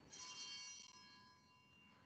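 Altar (sanctus) bells rung once to mark the consecration of the wine: a cluster of high ringing tones struck suddenly, fading away over about a second and a half.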